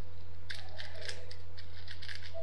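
Light computer-keyboard keystrokes, a handful of faint clicks as a word is typed, over a steady low hum.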